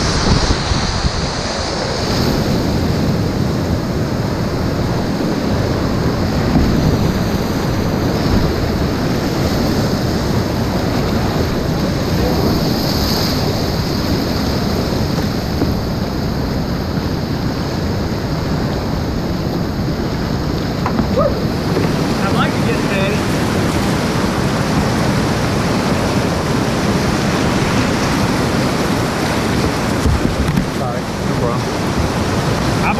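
Loud, steady rush of whitewater rapids heard close to the water from a kayak, with a brighter burst of splashing in the first couple of seconds as the boat goes down the falls.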